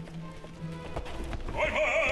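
Opera orchestra playing low sustained tense music, with a sharp accent about a second in. About a second and a half in a male operatic voice starts singing loudly with wide vibrato, over the orchestra.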